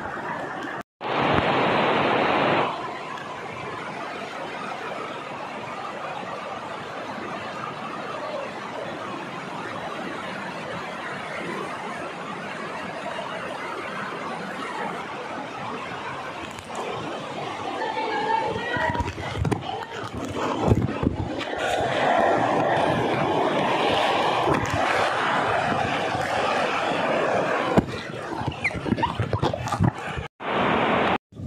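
Fast stream water rushing over rocks, a steady noise, with people's voices and some laughter over it. It grows louder and busier in the second half.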